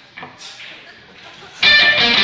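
A lull with faint room noise and a couple of short soft noises, then about one and a half seconds in a live band starts a song all at once, with loud electric guitar strumming.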